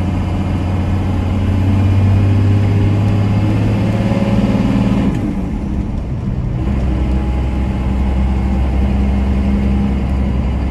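The 5.9 12-valve Cummins inline-six turbodiesel of a 1993 Dodge Ram 250 pulling under load, its note climbing slightly. About five seconds in the note dips and falls away, then it carries on at a lower pitch, as with an upshift on the five-speed manual.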